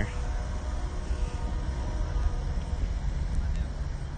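Outdoor background rumble with no speech: a low, fluctuating noise of wind on the microphone mixed with street traffic hum.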